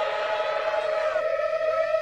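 An Italo disco song played in reverse: a held synthesizer chord with no beat, with notes sliding into it about halfway through.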